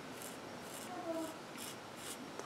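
A freshly sharpened knife blade being drawn over a wetted forearm, shaving off hair: about four short, faint scrapes. The edge is sharp enough to shave with.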